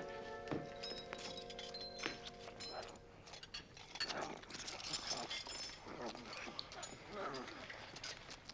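Quiet film score with held chords, then from about four seconds in a ghost creature's grunting, gobbling noises as it eats from a room-service cart, with a few light clinks of dishes.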